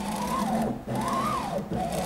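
The build plate of a CEL Robox 3D printer is pushed back and forth by hand, back-driving its stepper-motor drive. The result is a whine that rises and falls in pitch with each stroke, about three times.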